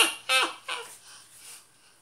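A man laughing heartily: three or four loud, high-pitched bursts of laughter right at the start that trail off into breathy wheezes within about a second and a half.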